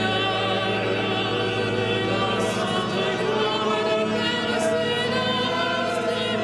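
Choir singing sacred music over a held pipe-organ accompaniment, a continuous stretch of sustained, wavering voices above steady low organ notes.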